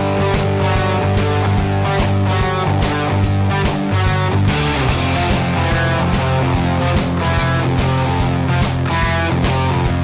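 Instrumental rock-style music with strummed guitar over a steady beat.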